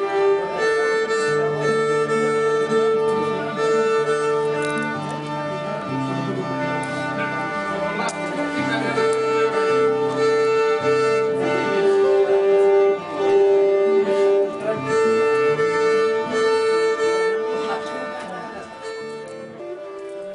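Instrumental ensemble music: a bowed string instrument plays a melody in long held notes over a slower-moving lower line.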